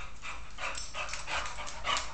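Boxer dog coming across a tile floor, a quick run of short clicks and breaths about five a second: claws ticking on the tiles as it trots, with panting.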